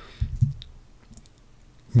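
A couple of low thumps about a quarter second in, then a few faint clicks from a computer keyboard as a single key is typed.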